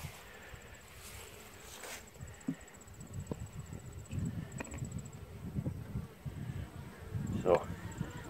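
Honey bees buzzing around an open mini nuc hive, with a few light knocks from the wooden lid being handled.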